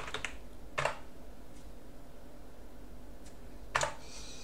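Computer keyboard keys struck one at a time while a password is entered: a few soft taps at the start, then a louder keystroke just under a second in and another near the end, with a couple of faint ones between.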